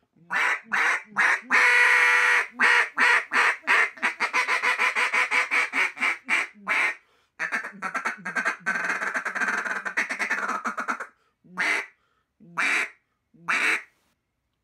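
An RNT Daisy Cutter wooden duck call being blown. It plays a long run of loud quacks with one held note early on, then a fast string of short quick notes after a brief pause, and ends with three single quacks.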